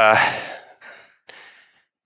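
A man's hesitant 'uh' trailing off into a breathy exhale, with faint breath noise and a single small click just past halfway.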